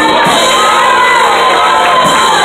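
A church congregation singing and shouting together in worship, loud and full. Many voices overlap, with long held notes and a steady low tone underneath.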